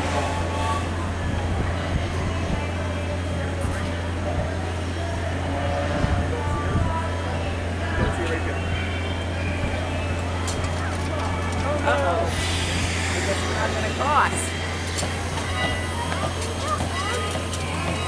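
People's voices in the background over a steady low rumble.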